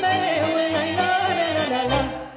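Romanian Banat folk band of violins, accordion and cimbalom playing the closing bars of a song: a sustained melody line falling slowly in pitch over a steady bass beat.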